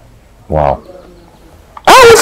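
Speech only: a man's short voiced utterance about half a second in, a pause, then his talking starting again near the end.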